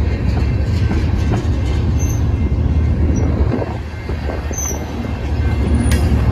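Loaded freight train of tank cars rolling past at close range: a steady, loud rumble of steel wheels on the rails, with a couple of brief high-pitched wheel squeals, one about two seconds in and one just past halfway.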